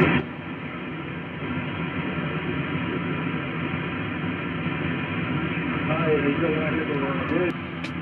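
Icom IC-7300 HF transceiver's speaker playing single-sideband receive audio on the 17-metre band: a steady hiss of band noise with faint, weak voices buried in it, and a weak voice coming up a little louder about six seconds in. It is a weak long-distance station and pileup barely above the noise.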